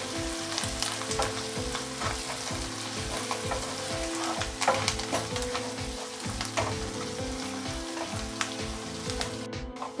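Chopped onions, green chillies and curry leaves sizzling in hot oil in a nonstick kadai, with a wooden spatula scraping and tapping against the pan as they are stirred, giving frequent small clicks over a steady sizzle.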